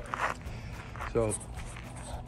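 Footsteps on a dirt and gravel yard as the person filming walks around the vehicle, with a short scuff near the start and one brief spoken word. A steady low hum runs underneath.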